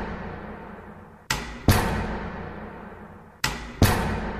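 Deep booming percussive hits in pairs, two strikes about half a second apart, each pair ringing out in a long fading tail. One pair comes about a second in and another near the end.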